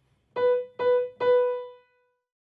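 Kawai grand piano: the same middle-register note struck three times in quick succession, the third left to ring and fade away.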